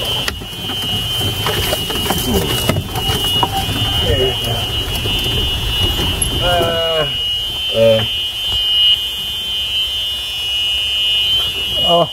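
A golf cart's electronic warning buzzer sounds as one steady, high-pitched tone over the low rumble of the cart driving up a rough wooded trail. A brief voice cuts in about halfway through.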